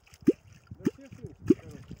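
A catfish kvok (a hand-held tool with a cupped heel) struck into water, giving deep hollow bloops whose pitch bends: three strokes, one about every 0.6 seconds. This is the call used to draw catfish.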